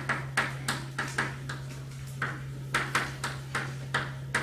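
Chalk tapping and scratching on a chalkboard as words are written: a quick, irregular series of short sharp clicks, about three or four a second, over a steady low hum.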